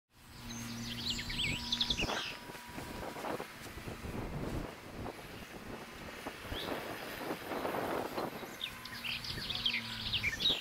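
Birds chirping over wind buffeting the microphone, the chirps coming mostly in the first two seconds and again near the end. A faint steady low hum sits underneath at the start and near the end.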